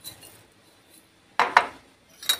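Two quick clinks of kitchenware against a ceramic bowl about one and a half seconds in, as fried shallots are tipped into mashed potato.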